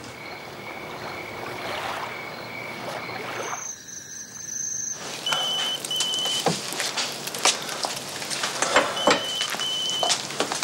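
Night-time insects chirping in high, steady trills that change pitch about halfway, then break into short pulsed chirps. Scattered clicks and knocks run through the second half.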